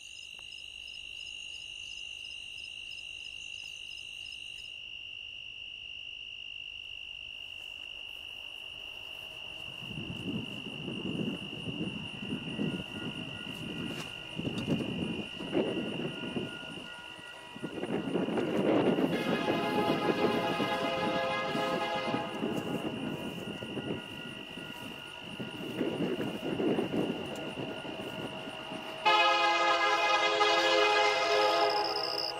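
Crickets chirping steadily, then a freight train rumbling closer with a long horn blast a little over halfway through. Music starts just before the end.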